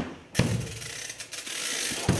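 A sharp click, then about a third of a second in a ratchet starts a fast, even clicking rattle, like a clockwork key being wound.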